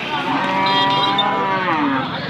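Cattle mooing: one long moo that falls in pitch at its end.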